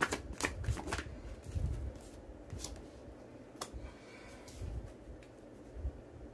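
A tarot deck being shuffled: a quick run of card flicks and snaps in the first second, then a few single soft card clicks as a card is drawn and laid down.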